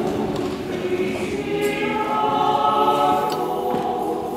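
Choir singing a hymn in long held chords, growing a little louder about halfway through.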